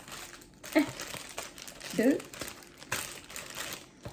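Plastic heat-pad packets crinkling as they are handled and shuffled in the hands, in several short rustles.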